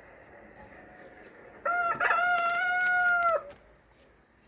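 A rooster crowing once, a short opening note and then a long held note, lasting nearly two seconds, over the faint steady hum of honeybees at the open hive.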